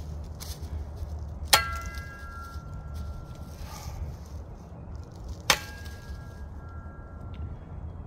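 Two sharp chops, about four seconds apart, of a Cold Steel BMFDS shovel's steel blade striking a thin sapling branch. Each blow leaves the blade ringing briefly with a few clear metallic tones.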